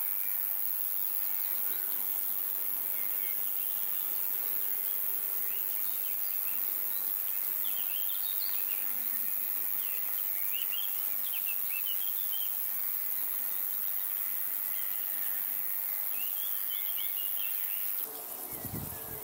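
Steady high-pitched meadow insect sound, like crickets or grasshoppers stridulating, with scattered short bird chirps clustered in the middle and again near the end.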